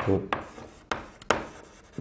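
Chalk writing on a blackboard: about four sharp, scratchy chalk strokes, each fading quickly, as letters are written.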